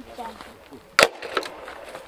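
A single sharp wooden knock about a second in, from the wooden box traps being handled.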